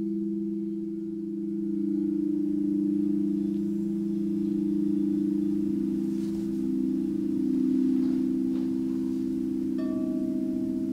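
Quartz crystal singing bowls ringing in long, sustained, overlapping low tones that waver slowly against each other. Another close note swells in a few seconds in.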